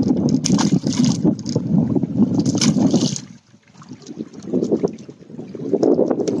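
Wind buffeting the microphone in loud, rough gusts, dying away briefly a little past halfway before building again.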